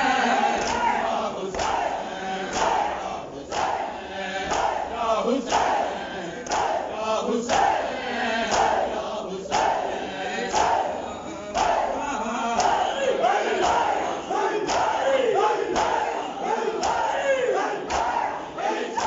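Crowd of men chanting a noha in unison while beating their chests in matam, the hand strikes landing together about once a second.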